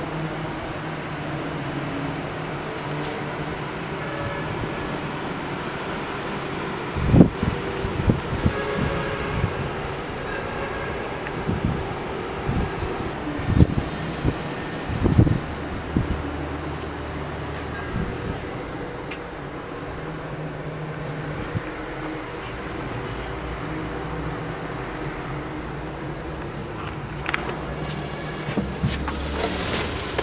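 Small gasoline engine of a 300cc cab tricycle running steadily with a low hum. Several low thumps come between about seven and sixteen seconds in, and a few sharp clicks come near the end.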